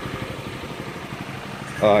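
Yamaha Morphous scooter's single-cylinder engine idling, a steady low pulsing.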